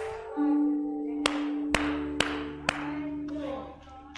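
Church keyboard accompaniment holding one sustained chord, with four sharp hand claps in a steady beat about half a second apart in the middle.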